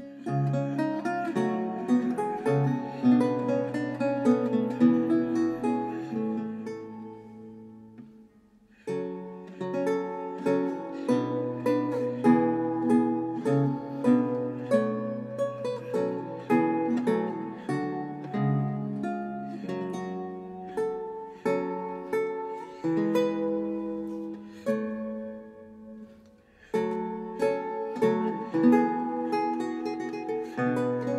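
Solo Renaissance lute playing plucked, many-voiced lines. The sound dies away almost to silence about eight seconds in and again about twenty-six seconds in, and each time the playing starts afresh.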